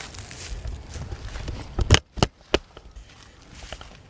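Footsteps crunching through dry leaf litter on a forest floor, with three or four sharp cracks about halfway through.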